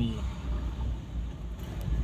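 Steady low rumble of a car's engine and tyres, heard from inside the cabin as it rolls slowly along at low speed.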